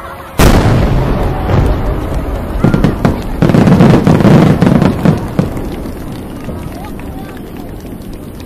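Fireworks going off: a sudden loud bang about half a second in, then a dense run of bangs and crackling, heaviest in the middle, that dies away into fainter crackle.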